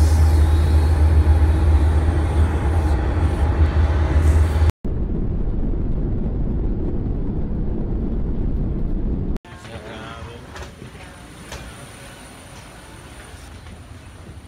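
Airliner cabin noise: a loud, steady deep rumble of the aircraft, cut off abruptly about 5 seconds in and replaced by a somewhat quieter, duller rumble. About 9 seconds in that also cuts off, leaving a much quieter steady background hum with a faint thin high whine.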